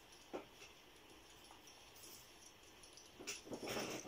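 A brief soft knock about a third of a second in, then near the end a louder rustle lasting under a second as a cloth sleeve brushes the recording device while an arm reaches across it.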